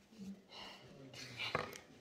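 Quiet, faint handling of packaging, with a couple of small sharp clicks about one and a half seconds in as children's plastic-handled scissors snip the toy's packaging.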